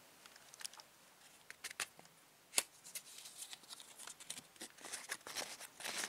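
Faint, scattered rustles and small ticks of sandpaper and fingers against a padlock as graphite powder is tipped into the keyway of the jammed lock, with one sharper tick about halfway through and a quick run of them near the end.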